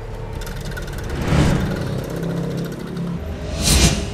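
A prize wheel spinning, its pointer ticking quickly over the pegs, under dramatic background music. The music has low held notes and two swelling whooshes, the louder one near the end.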